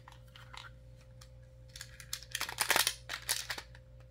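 Hard plastic toy parts clicking and scraping as a Beyblade X launcher grip is handled and fitted onto a string launcher, with a busier run of clicks a little past halfway.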